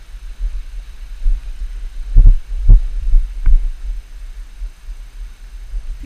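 A steady low rumble with three dull thumps close together a little over two seconds in.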